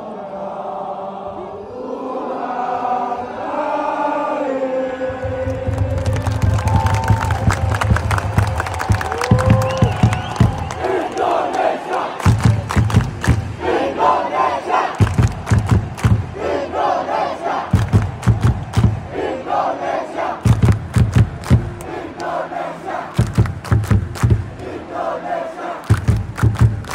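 Stadium crowd singing together in unison, then from about five seconds in a rhythmic chant, with groups of low thudding beats and hands clapping in time.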